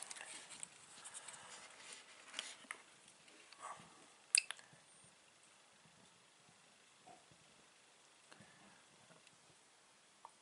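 Faint handling rustles, then one sharp click about four seconds in as a 1000 W pure sine wave power inverter is switched on from its wired remote panel.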